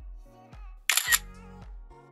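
Background music with repeating notes over a bass line. About a second in comes one short, loud camera-shutter click sound effect, the loudest thing heard.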